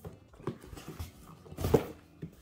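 Cardboard shipping box being handled and lifted: a few light knocks and scuffs, then a louder thump near the end.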